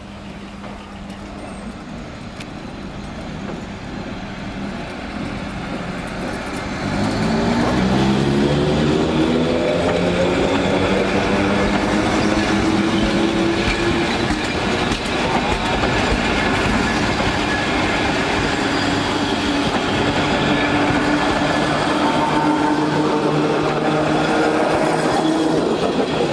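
Electric multiple-unit train departing and accelerating past: its traction motors give a whine in several tones that climbs in pitch as it gathers speed, over the rumble and clatter of the wheels on the rails. It grows louder over the first few seconds and is loudest from about seven seconds in.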